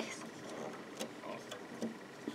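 Faint handling sounds of fingers working rubber bands on the pegs of a plastic band loom, with a small click about halfway and another near the end.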